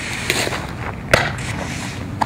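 A softball smacking into a catcher's mitt once, sharply, about a second in, with a fainter knock shortly before it, over steady outdoor background noise.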